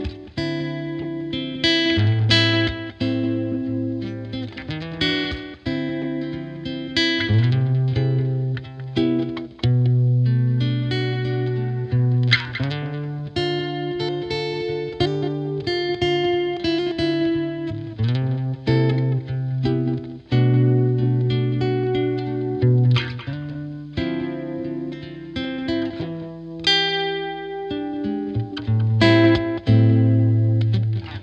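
Acoustic-electric guitar played by hand, plucked melody notes over low bass notes that ring for a second or two at a time.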